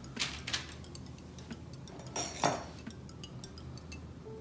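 Light knocks and clicks of banana pieces on sticks being handled and set on a plastic cutting board, with a louder knock about two and a half seconds in.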